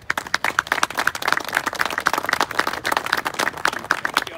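A small audience applauding, starting suddenly, with individual hand claps loud and close.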